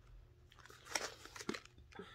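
Faint crinkling of a plastic pouch of soy wax melt sprinkles being handled, with a few short crinkles about a second in and again near the end.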